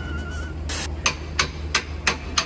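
Sharp metallic clicks or taps from a hand tool working on a truck's underside at the axle and suspension, about three a second, starting about a second in after a brief hiss, over a low steady hum.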